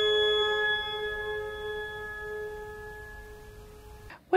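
Pipe organ holding its final chord, a stack of steady tones that slowly fades away, the upper notes thinning out before the last middle tone dies near the end.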